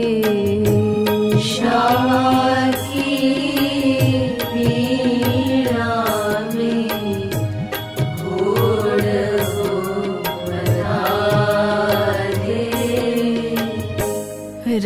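Indian devotional bhajan music: a wavering, gliding melody over steady held tones, with new phrases rising in every few seconds.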